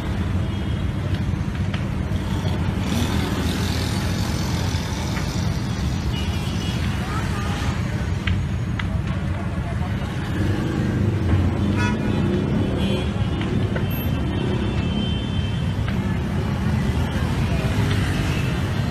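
Steady low rumbling noise that does not let up, with a few short sharp clicks and voices faint behind it.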